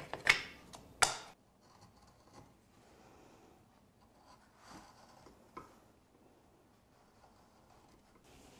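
A few sharp clicks of the knife being set into its fitted walnut pocket in the first second, then faint, short scrapes of a number nine carving gouge paring a chamfer on the edge of a finger hole in the walnut.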